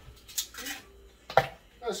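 Ice cubes being pressed out of a plastic ice cube tray and dropping into a clear plastic blender cup, with two sharp clinks about half a second and a second and a half in.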